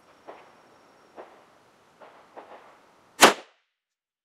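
A single shot from a Zastava M70 NPAP AK-pattern rifle in 7.62×39 mm, a sharp crack about three seconds in that cuts off abruptly, preceded by a few faint clicks.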